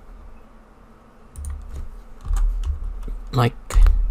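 Computer keyboard keys being typed: a run of short clicks with dull knocks, starting about a second and a half in.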